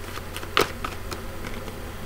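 Tarot cards being shuffled and handled off-frame: irregular light clicks and snaps, one louder about half a second in, over a steady low electrical hum.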